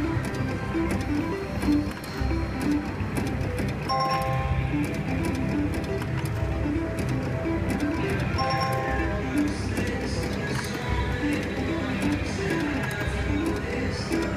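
Slot machine sounds while the reels spin: a running pattern of short electronic notes, with a brighter chime about four seconds in and again after about eight and a half seconds, over casino background noise.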